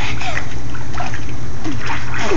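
Two small children swimming in a pool, their kicks and arm strokes splashing the water in repeated short bursts.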